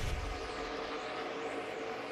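Track sound of NASCAR Xfinity Series stock cars' V8 engines running at speed: a steady drone of engine notes, with a faint rise and fall in pitch as a car passes near the end.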